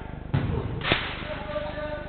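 Two impacts of a football during play, about half a second apart: a dull thud, then a louder, sharper crack.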